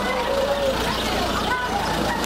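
A steady low engine hum, like a vehicle idling, under people's voices talking.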